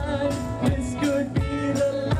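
Live rock band playing through a PA: a male singer over electric guitars and a drum kit keeping a steady beat.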